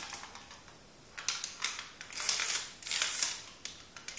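Plastic clicking and clattering from a homemade Fischertechnik pinball machine being played, as its flippers are worked and the ball knocks about. The clicks come in several short bursts from about a second in.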